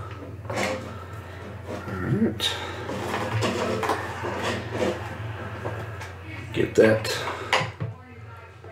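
Clicks, taps and knocks of small plastic and metal model-airplane parts being handled and fitted together by hand, loudest in a cluster about seven seconds in, over a steady low hum.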